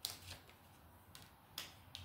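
Faint handling of paper cards: a few soft flicks and taps as cards are drawn from a hand and one is laid down on a cloth mat.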